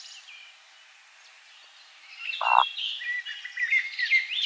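A Eurasian woodcock on its roding display flight gives one short, low croaking grunt about two and a half seconds in, after a quiet start. Other birds sing thinly behind it.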